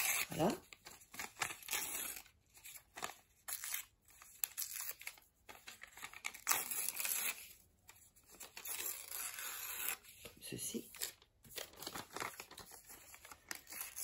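Lined notebook paper being torn by hand, the edges ripped off in short strips, with brief pauses and paper rustling between the rips.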